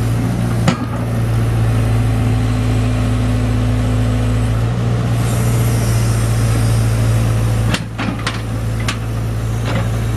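Excavator's Isuzu four-cylinder turbo diesel running steadily with a constant low hum. A single sharp knock comes just under a second in, and a quick series of sharp knocks and clanks comes in the last two seconds.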